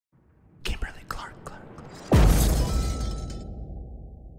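Logo-reveal sound effect: a run of sharp clicks and rustling starting about half a second in, then a heavy impact a little after two seconds with a deep boom that slowly fades.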